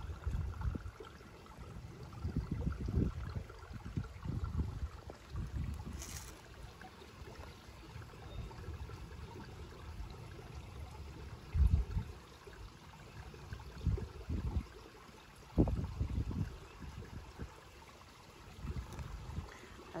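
Faint steady trickle of water in a garden koi pond, with irregular low rumbles on the microphone and a few louder low thumps, the strongest near the middle and about three-quarters of the way through.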